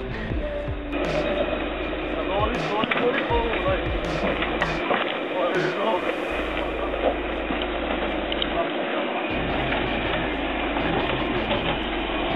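Indistinct voices over background music, with the rough rolling noise of a Jeep Wrangler's tyres crawling over loose rock.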